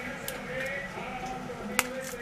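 Metal key opener being turned on a tin of corned beef, winding the tin's tear strip: quiet handling with a faint click early and one sharp metal click near the end.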